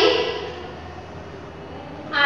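A woman's voice trails off at the very start, followed by a pause holding only steady room noise: a low hum and faint hiss.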